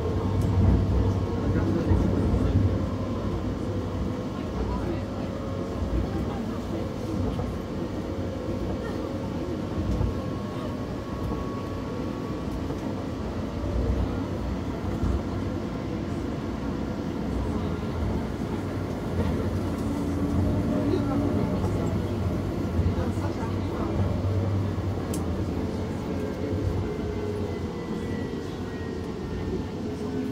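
Steady running noise inside a Confederation Line light-rail car (Alstom Citadis Spirit) at speed: low rumble of steel wheels on rail with a faint motor whine. Over the last few seconds the whine falls in pitch as the train begins slowing for the next station.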